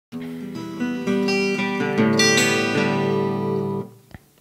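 Acoustic guitar being plucked: a run of single notes over sustained lower strings, with no singing, stopping abruptly near the end.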